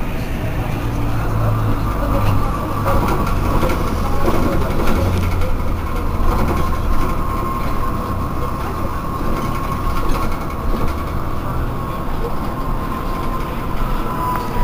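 Irisbus Cristalis ETB18 trolleybus standing at a stop, giving off a steady high electrical whine that slowly sinks a little in pitch, over a low hum.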